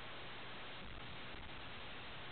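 Steady hiss of an airband radio receiver on an idle control-tower frequency, with no transmissions.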